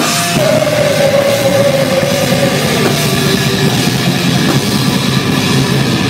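Rock band playing live and loud, electric guitar over a drum kit. One long held note slides slightly down in pitch over the first two or three seconds.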